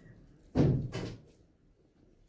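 A sudden dull thump about half a second in, dying away over half a second, with a smaller knock right after it.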